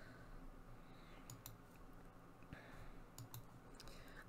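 Near silence: room tone with a few faint, short clicks scattered through it.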